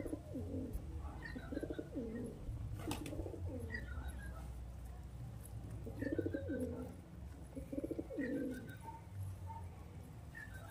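Domestic pigeons cooing in repeated bouts, several short throaty coos in each, with pauses of a second or more between bouts.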